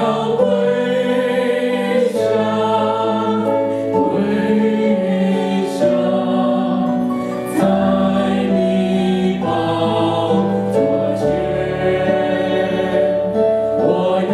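Slow congregational worship song: a woman's voice over a microphone with many voices singing along, accompanied by electric keyboard chords whose bass note changes about every two seconds.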